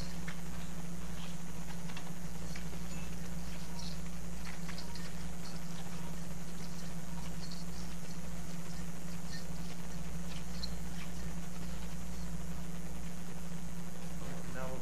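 Steady low electrical-sounding hum with a low rumble under it, and faint scattered clicks and ticks throughout.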